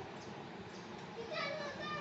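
A young child talking in Mandarin in a high voice, louder in the second half.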